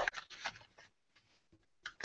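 Faint rustling and crackling of black construction paper being rolled by hand into a tube, a few soft crackles in the first half-second and again near the end, with a quiet stretch between.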